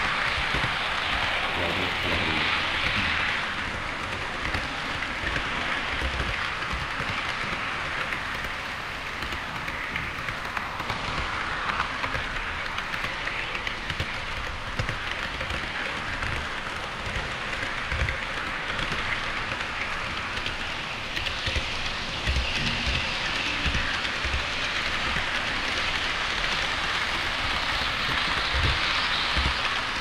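HO scale model train wheels rolling on KATO Unitrack, making a steady rushing rattle with irregular small knocks as the wheels cross rail joints.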